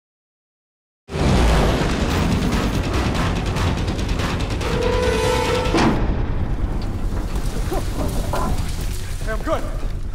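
Film soundtrack: a loud, deep rumble over a dense hiss cuts in suddenly after a second of silence and stays steady, with music and a held two-note tone about five seconds in. Brief voice calls come in near the end.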